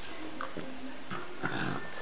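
A Boston terrier and an American hairless terrier play-fighting, making short dog noises, the loudest about one and a half seconds in.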